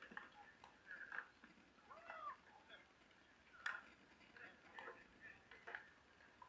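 Faint court ambience of distant voices, with one sharp pop of a pickleball paddle striking the ball about three and a half seconds in.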